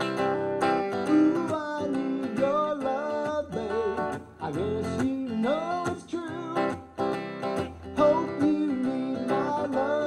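Semi-hollow electric guitar strummed in a steady rock-and-roll rhythm, with a wordless sung melody sliding up and down over it.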